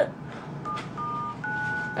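Mobile phone keypad giving three touch-tone dialing beeps as its keys are pressed, each beep a steady two-note tone, the last one held longest.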